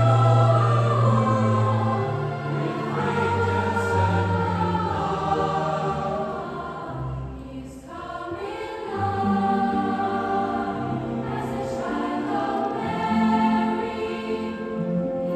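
Children's choir singing with an orchestra accompanying, in long held phrases, with a short break between phrases about eight seconds in.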